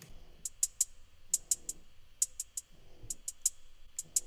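Programmed hi-hat loop playing on its own: short, crisp ticks in quick clusters of two or three, each cluster about a second after the last. Its attack is softened with an envelope shaper and its groove reshaped with Kickstart ducking.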